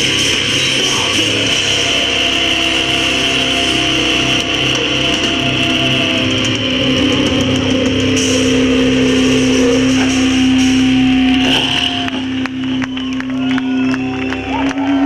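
Rock band playing live with electric guitars, bass and drums through a PA. About twelve seconds in the song ends on a held note, and the crowd starts clapping and cheering.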